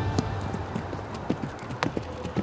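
Hoofbeats of a saddled thoroughbred horse cantering on loose footing: an uneven run of short thuds and knocks, the loudest near the end.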